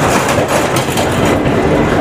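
Tapovan Express passenger coach rolling alongside a station platform, its wheels giving irregular clicks and knocks over the track, heard loud from the open coach doorway.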